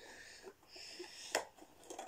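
Small cardboard Mystery Minis box being pried open by hand: faint scraping and rustling of the card, with one sharp click about a second and a half in.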